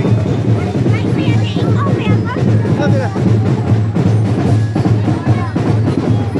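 Drums playing a steady beat, with a crowd of voices talking and calling out over it.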